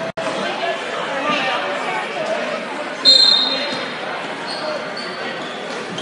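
Crowd voices in a basketball gymnasium with a basketball bouncing on the hardwood. About three seconds in comes a short, loud, high-pitched referee's whistle.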